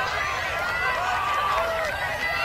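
Crowd of spectators calling out and cheering at a distance, many voices overlapping.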